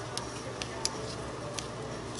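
Scissors snipping loose sewing threads off the back of a machine-stitched card: four short, sharp snips spread over two seconds.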